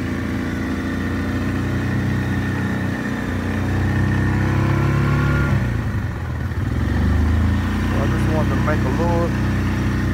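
2018 Yamaha Grizzly 700 SE's single-cylinder engine pulling the ATV slowly through snow in low range and four-wheel drive. The engine note rises over the first few seconds, drops back sharply about halfway, then picks up again.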